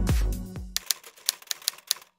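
Electronic dance music with a heavy beat fades out within the first second. Then come a handful of sharp typewriter-key clicks, a typing sound effect for on-screen text.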